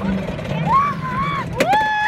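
Roller coaster riders crying out, a short call and then a long held high shout starting near the end, over the steady rumble of the moving coaster car.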